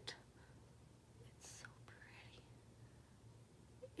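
Near silence: room tone, with a faint breathy sound about a second and a half in.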